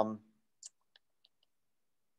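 The tail of a spoken 'um', then a few faint, short computer clicks. The first click comes about half a second later, and two fainter ticks follow within the next second.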